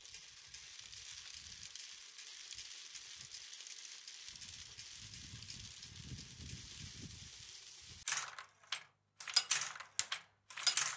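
A faint steady hiss, then from about eight seconds in, several loud bursts of metallic rattling and clinking in quick succession.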